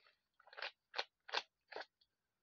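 A person chewing something crunchy right at the microphone: four crisp crunches, a little under half a second apart.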